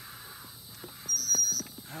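Hydraulic floor jack being pumped to lift a tree stump out of the ground: a thin, high squeak on the pump stroke about a second in, lasting about half a second, with a few sharp clicks.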